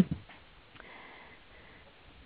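A faint sniff from a person at the microphone in a pause in speech, over low background hiss.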